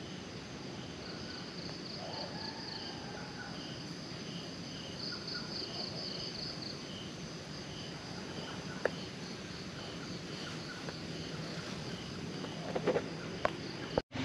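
Crickets and other night insects chirping: a short high chirp repeating about every two-thirds of a second, with two spells of buzzing trill. A sharp click sounds about nine seconds in, and a few knocks come near the end.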